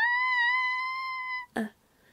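A reader's voice acting a scream of "Applejack!", the last syllable held as one long high cry at a steady pitch for about a second and a half, then a short "uh".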